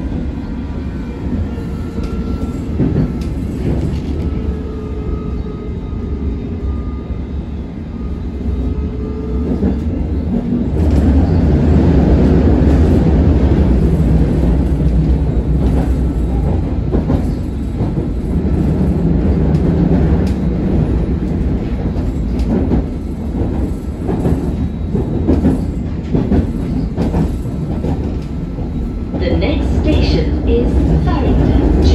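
A London Underground S7 Stock train heard from inside the carriage while running through a tunnel: a steady loud rumble with a faint whine that shifts slightly in pitch in the first few seconds. It grows louder about ten seconds in, and in the second half the wheels clack repeatedly over rail joints.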